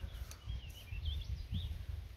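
Faint bird song: a few short, wavering high chirps over a low background rumble.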